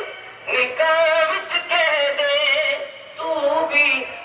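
A solo voice singing a Sufi ghazal in long, wavering, ornamented phrases, with short pauses about half a second in and about three seconds in.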